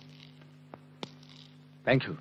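Steady low electrical hum on an old film soundtrack, with a few soft clicks, and a short loud burst of voice just before the end.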